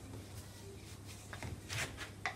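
Mixing spoon stirring flour and water into bread dough in a bowl: faint rubbing and scraping, with a few louder scrapes in the second half, over a low steady hum.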